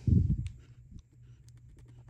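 A low thump at the start, then faint scattered clicks of a small screwdriver turning a screw loose from an iMac's metal display frame.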